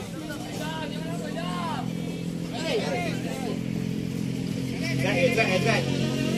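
Voices shouting short calls across a football pitch, three times, over a steady low hum that gets a little louder near the end.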